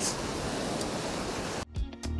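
Steady rushing noise of surf breaking on the beach, which cuts off suddenly near the end as background music starts.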